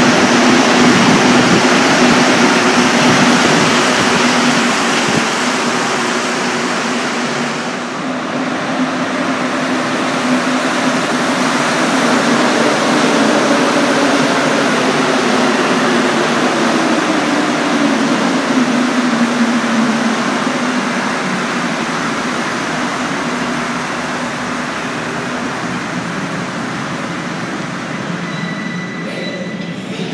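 Montreal Metro MPM-10 Azur rubber-tyred train running past along the platform: a loud, steady rush of tyre and running-gear noise, with a motor whine that shifts slowly in pitch and fades a little toward the end.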